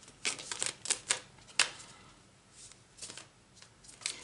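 Tarot cards being handled and shuffled: a quick run of sharp card snaps and flicks in the first second and a half, the loudest about a second and a half in, then a few fainter ones near the end.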